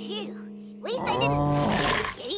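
Cartoon dinosaur roar, starting about a second in and much louder than what comes before, over background music.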